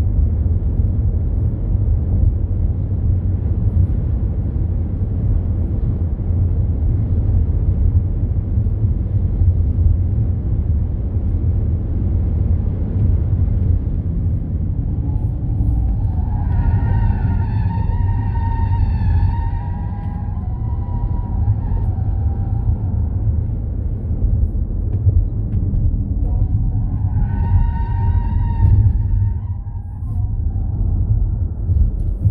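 Ford Mustang Mach-E GT driven hard on a road course: a steady low rumble of wind and road noise at speed. Tyres squeal through the corners, a long squeal of several seconds about halfway through and a shorter one near the end.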